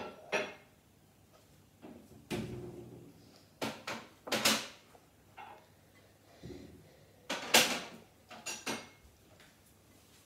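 A spoon scraping and knocking against a glass mixing bowl as thick brownie batter is stirred: irregular strokes with short gaps between them, the loudest about seven and a half seconds in.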